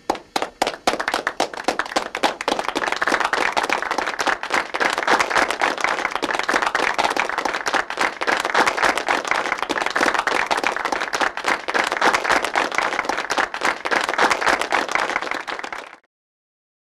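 Applause: a few scattered claps that quickly build into steady, dense clapping, cutting off suddenly at the end.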